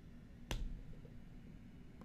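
A single sharp click about half a second in, as the pasted request is sent; otherwise faint room tone.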